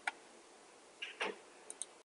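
A few faint, short clicks over a quiet hiss: one at the start, a soft one about a second in, and two sharp ticks in quick succession near the end.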